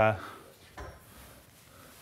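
A single short, light knock a little under a second in, after a trailing spoken "uh"; otherwise quiet room tone in a lecture hall.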